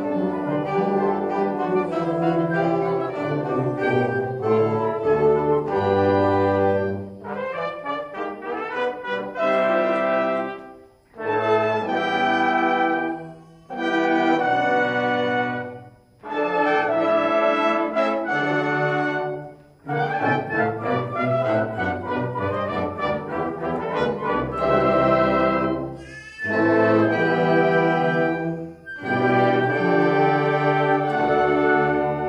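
A high school concert band of woodwinds, saxophones and brass, tuba included, playing a piece. It plays sustained full chords in phrases, and the sound drops away briefly between several of the phrases.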